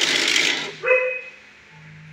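Dog barking: one loud bark right at the start and a second shorter bark just before the one-second mark, then quieter.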